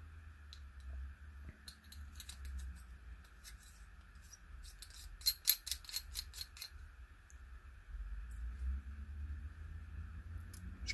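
Small clicks and ticks of a metal eyepiece barrel and a 3D-printed washer being handled and fitted onto the eyepiece's threads, with a quick run of sharper clicks a little past halfway. A faint steady hum lies underneath.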